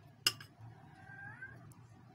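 A single sharp clink near the start, then a short rising call about a second in that sounds like a cat's meow.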